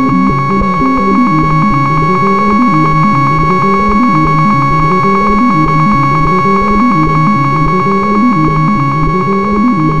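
Minimal electronic music played on synthesizers: a steady high drone tone held throughout, over a low synth line that steps up and down in a repeating pattern every second or two.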